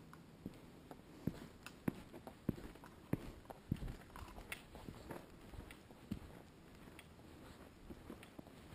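Footsteps walking on a dirt forest trail: faint, even steps a little more than half a second apart, firmer in the first half and less regular later.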